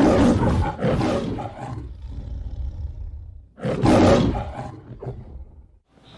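Recorded lion roaring, the MGM logo's 'Leo the Lion' roar: one roar at the start, then a second about three and a half seconds in.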